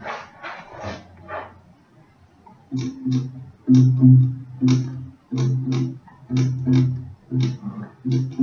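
Acoustic guitar being strummed: a few light strokes at first, then from about three seconds in, louder rhythmic strumming of chords in short groups with brief gaps between them.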